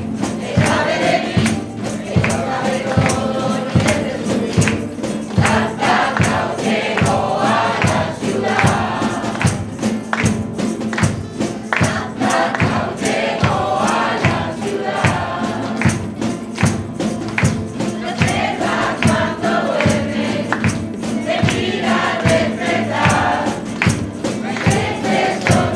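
A folk ensemble performing a Christmas carol: a mixed choir sings over strummed guitars and lutes, with a steady beat of hand clapping and percussion.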